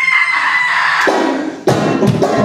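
A loud, long high-pitched cry, its pitch falling slightly, cut off about one and a half seconds in; moments later banjo music with percussion starts up.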